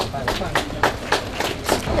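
A few people clapping at an outdoor ceremony: sharp, distinct claps about three or four a second, with voices murmuring underneath.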